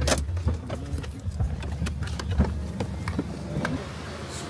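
Car engine running with a low rumble while people climb out of it, with scattered clicks and knocks from the car and their steps. The rumble fades about halfway through.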